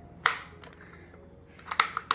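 A few short, sharp plastic clicks from a red race-car-shaped plastic bottle being handled: one about a quarter second in and a quick cluster near the end.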